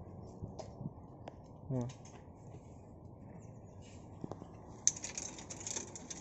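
Scattered single raindrops dripping onto a tarp-covered surface: faint, irregular ticks a second or so apart. A soft hiss comes in near the end.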